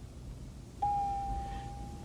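A single steady mid-pitched tone starts abruptly about a second in and holds, fading slightly, for just over a second. Before it there is only faint background.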